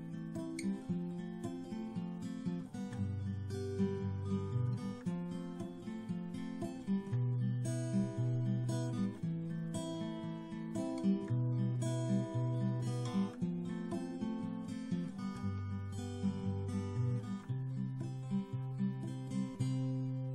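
Background music played on acoustic guitar: a run of plucked notes over a steady bass line.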